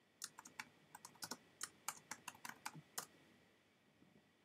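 Faint typing on a computer keyboard: a quick, uneven run of keystrokes, as a short phrase is entered, that stops about three seconds in.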